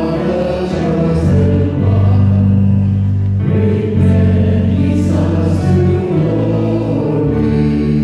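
Several voices singing a slow worship hymn together, accompanied by electric keyboard and acoustic guitar, with sustained notes throughout.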